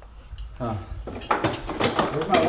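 A short vocal sound, then a quick run of knocks and clatters from a storage cabinet door and its contents being handled while searching for surf wax.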